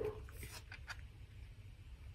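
A dog barking faintly in the background, a few short barks about half a second to a second in.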